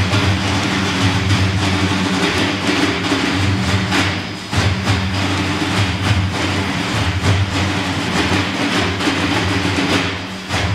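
Many frame drums (def, tef and erbane) played together as a dense, continuous wash of strokes and rolls, with a steady deep drone underneath. The loudness holds level apart from a brief dip about four and a half seconds in.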